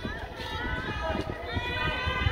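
Footsteps on wet asphalt at a walking pace, under the voices of a group of people ahead.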